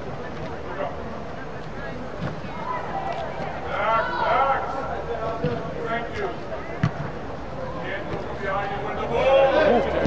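Shouting voices of players and onlookers during a youth soccer match inside a large sports dome, loudest about four seconds in and again near the end, over a steady hum of the hall. A sharp thud of a ball being kicked comes about seven seconds in.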